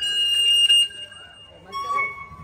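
Public-address microphone feedback: a loud steady whistle that jumps to a higher pitch and fades within about a second, then a lower whistle starts near the end.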